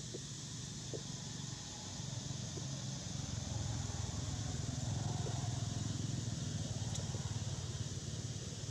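A low rumble that swells from about three seconds in and eases off near the end, over a steady high hiss, with a few faint small clicks.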